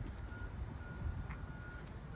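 Low steady outdoor rumble with a faint, thin high tone that comes and goes, and a couple of faint ticks.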